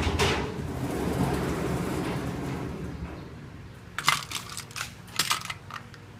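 Rustling and brushing as a felt bag is handled and set down on a cloth-covered table, followed by a few sharp clicks and a small rattle in two quick clusters about four and five seconds in as small plastic items are picked up.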